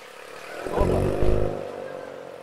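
A car engine revs once, a loud blip that rises and falls over about a second near the middle, over the lower drone of running engines.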